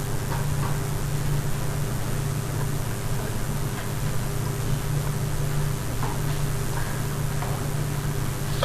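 Steady low electrical or fan-like hum with an even hiss of background noise, and a few faint clicks.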